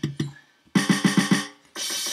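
Drum-kit samples played back from a simple drum-sampler app: a few quick hits at the start, then a fast run of about six hits, then a sustained ringing sound near the end.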